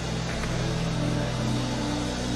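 Soft, low sustained keyboard chords, the held notes shifting to new pitches every second or so.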